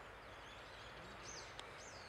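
Faint lakeside dawn ambience with a few short, high bird chirps a little past a second in, and a faint click near the end.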